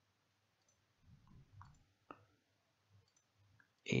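A few faint computer-mouse clicks, the clearest about two seconds in, dismissing an on-screen alert.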